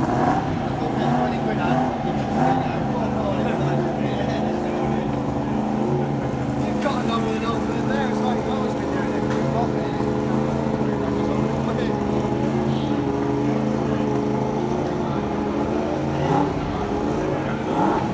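A racing motorcycle engine held at a steady fast idle, one even hum that barely changes pitch, with people talking in the background.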